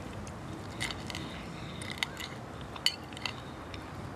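Scattered light clinks and taps of cutlery on plates and glass. The sharpest comes about three quarters of the way through and rings briefly.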